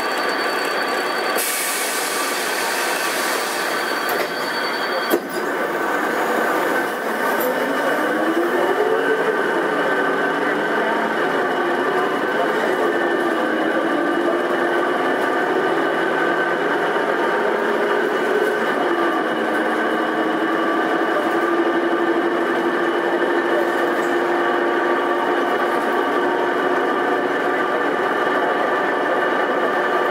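Karosa B931E city bus running, with a short hiss of air early on. From about 7 s the engine pitch rises and falls several times as the bus pulls away through its gears, then it settles into a steady cruising drone.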